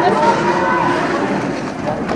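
Several voices calling and shouting at once, their pitches rising and falling, over the steady rolling noise of roller skates on a concrete floor during a roller derby jam.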